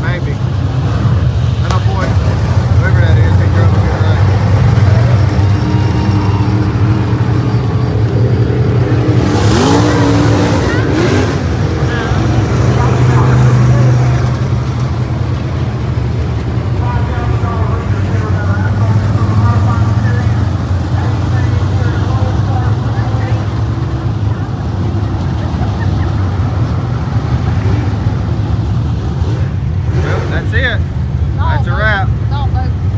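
Dirt-track open-wheel modified race car engine running loud and steady as the car circles the oval, with a rising rev about ten seconds in.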